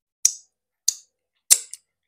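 Fingers being sucked clean: three sharp, wet lip smacks a little over half a second apart.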